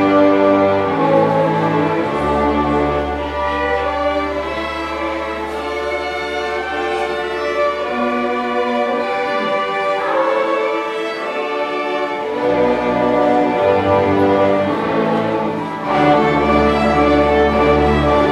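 School string orchestra of violins, violas, cellos and double basses playing sustained chords. The bass line drops out for a couple of seconds past the middle, and the full ensemble comes back louder near the end.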